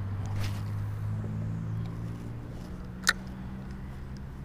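An engine running steadily, a low even hum, with a single sharp click about three seconds in.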